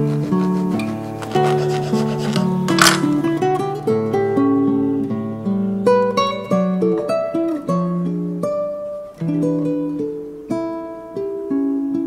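Background acoustic guitar music, a plucked melody running throughout. A little under three seconds in comes a brief rasping scrape, fitting a serrated bread knife sawing through the toasted bagel's crust.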